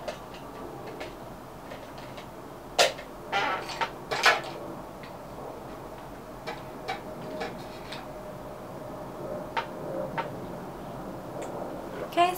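Clicks and clacks of makeup compacts and cases being handled and snapped open or shut. There is a cluster of sharp knocks about three to four seconds in, then scattered lighter clicks, over a steady low room hum.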